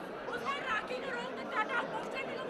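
Chatter of a tightly packed crowd: several voices talking over one another at once, with no clear words.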